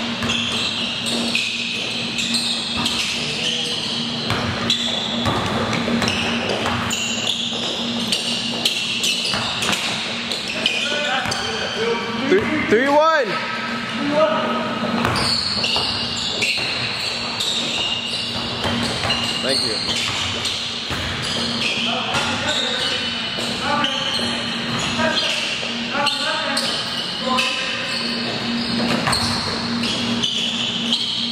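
Indoor pickup basketball in an echoing gym: a basketball dribbled on the hard court, sneakers squeaking, and players' indistinct shouts and chatter, over a steady low hum. A loud high squeal rises and falls near the middle.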